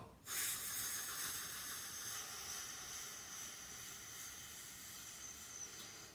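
A man's single long, uninterrupted breath: one steady hiss lasting about six seconds and slowly fading.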